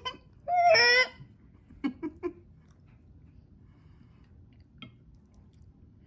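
One short high-pitched whine-like vocal sound, under a second long, about half a second in, followed by a few soft clicks about two seconds in.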